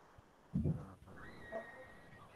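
A person's voice makes a short sound about half a second in, heard over the video call. It is followed by a faint, steady high tone lasting about a second.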